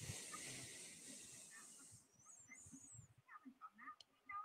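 Near silence: a faint hiss that fades out about two seconds in, followed by a few faint soft sounds.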